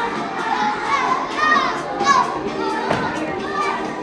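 Many young children's voices chattering and calling out at once over background music, with a single thump about three seconds in.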